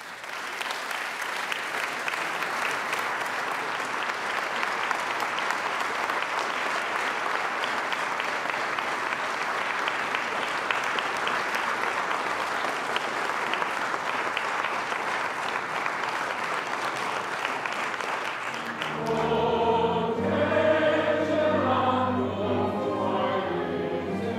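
Sustained applause from an audience, then about nineteen seconds in it gives way to a choir singing with accompaniment.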